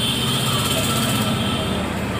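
Steady mechanical background whir with a thin high tone in it that fades about a second in.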